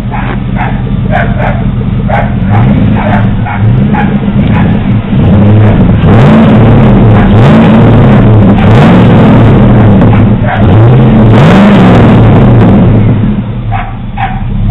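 Chevy pickup's engine through a MagnaFlow exhaust with dual tips, idling and then revved in about eight quick blips that rise and fall, loudest in the second half. A dog barks repeatedly over the idle in the first few seconds.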